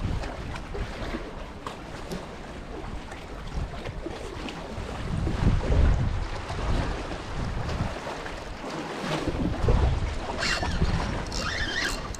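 Wind buffeting the microphone over the wash of sea water against jetty rocks, with the rumble swelling in gusts about five and nine seconds in.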